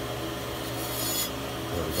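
Skate sharpener's grinding wheel running with a steady motor hum; about a second in, a single-point diamond dresser touches the spinning wheel for about half a second, a high scraping hiss as the diamond dresses the wheel face.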